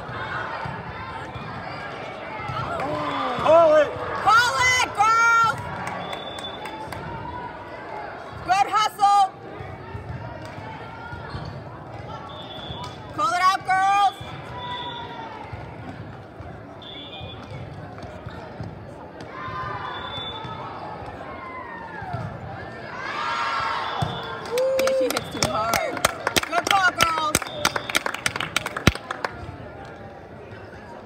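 Indoor volleyball in a large, echoing hall: the ball is hit and bounces on the court, with short shouted calls from players over a steady crowd din. A quick run of sharp hits comes near the end.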